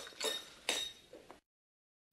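A few short clinks of crockery and cutlery, diner background from a film soundtrack, then the sound cuts off abruptly to dead silence about one and a half seconds in.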